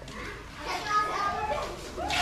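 Faint, high-pitched children's voices in the background.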